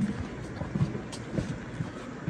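Footsteps on a concrete floor and handling of a handheld camera: a few soft, irregular low thumps, the first the loudest, over a low steady background noise.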